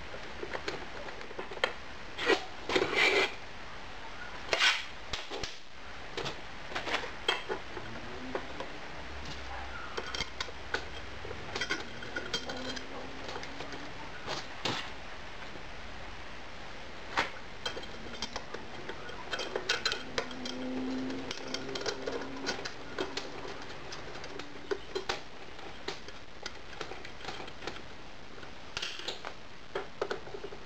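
Irregular clinks, taps and knocks of small metal screws and spacers and a screwdriver against a cast aluminium plate as it is screwed onto a light fitting, some with a short metallic ring; the loudest knocks come about two to five seconds in.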